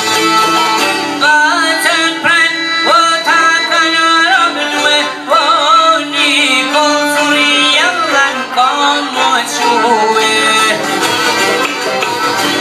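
Live Albanian folk music: a violin plays a wavering, ornamented melody over long-necked plucked lutes strumming and droning beneath it.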